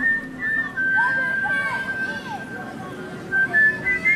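Someone whistling a slow tune in long held notes, sliding up into them. One long note runs through the middle, and a few shorter, higher notes come near the end, with faint chirping sounds underneath.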